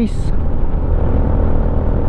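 Benelli VLX 150 motorcycle under way at a steady speed, its engine and the wind rush on the helmet microphone making a continuous low drone.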